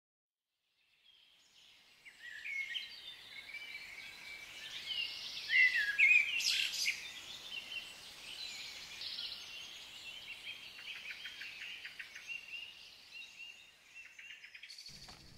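Birdsong: a mix of chirps, whistled glides and quick trills over a soft background hiss, fading in about a second in and loudest around the middle.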